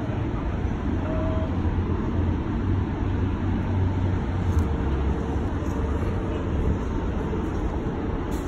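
Steady low rumble of city traffic.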